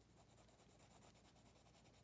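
Faint scratching of a colored pencil shading on drawing paper.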